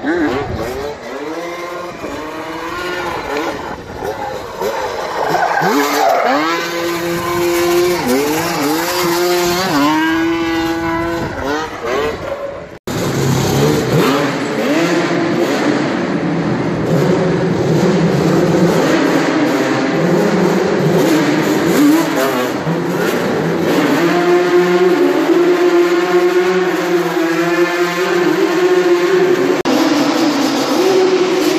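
Yamaha Banshee 350 quad's twin-cylinder two-stroke engine revving up and down over and over as the quad drifts and spins donuts, with tyres sliding on the concrete. The sound breaks off abruptly about a third of the way in and picks up again with the engine held at higher revs for longer stretches.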